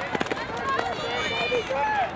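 Spectators shouting encouragement to runners, several voices calling out, with no words clear.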